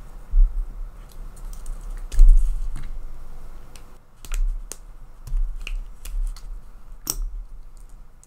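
Irregular clicks and taps with several dull thumps on a desk, the loudest thump a little over two seconds in.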